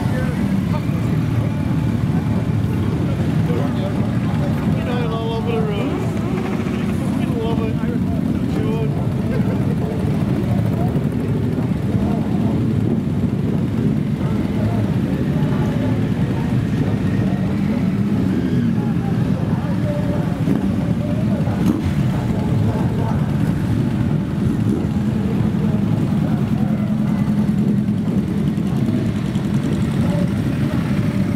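A stream of motorcycles riding slowly past one after another, their engines making a steady, unbroken rumble.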